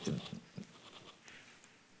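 A man's voice trails off at the end of a hesitant 'eh', with a faint breath just after. This is followed by near silence with faint room tone.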